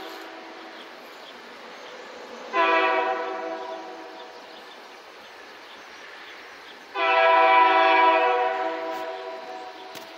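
Locomotive air horn sounding two blasts, a shorter one about two and a half seconds in and a longer one about seven seconds in, each starting sharply and fading out.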